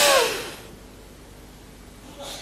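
A forceful breath out through the nose ends about half a second in with a short falling hum of voice, as in a yogic exhalation. A quiet steady background follows while the breath is held out, the external retention of Bahya pranayama.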